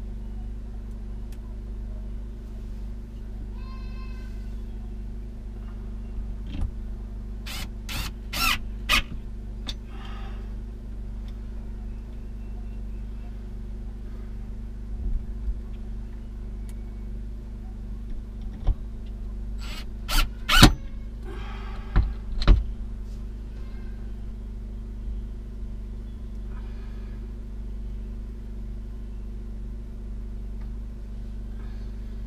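Cordless drill run in short bursts: a quick cluster of runs about eight seconds in and another about twenty seconds in, with a brief fainter whir near the start. A steady low hum runs underneath.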